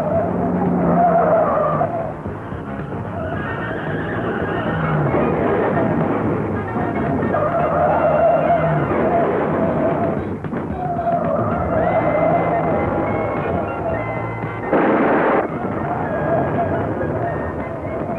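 Action-film soundtrack music mixed with car-chase sound effects: engines and skidding tyres. About fifteen seconds in there is a short, loud noise burst as a car crashes.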